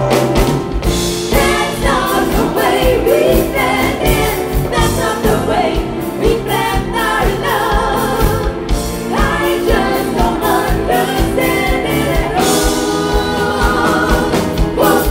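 Live band playing a pop song, with a woman singing lead and other voices joining in harmony over electric guitar and drum kit.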